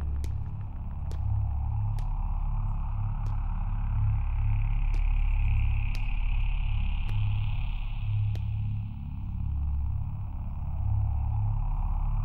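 Tense film background score: a deep, pulsing low drone with a swelling middle layer and a faint tick about once a second.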